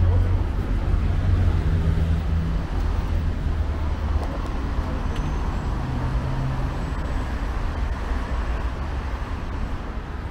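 Street traffic: a motor vehicle's engine running close by, its low rumble loudest in the first few seconds and slowly fading, over the general noise of the road.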